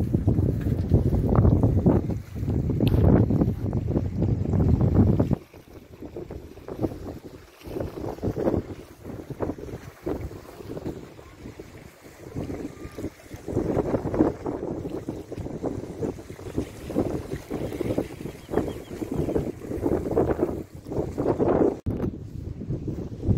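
Wind buffeting the microphone, a heavy low rumble for the first five seconds that drops suddenly to lighter, uneven gusts.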